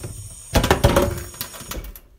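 A cup or glass being handled on a hard surface, with a cluster of knocks about half a second to a second in.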